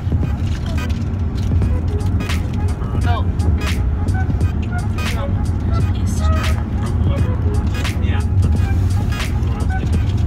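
Steady low rumble of a car's cabin, with scattered small clicks and rustles from handling.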